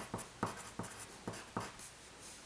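Pencil writing on paper: a quick run of about eight short strokes, which stops shortly before the end.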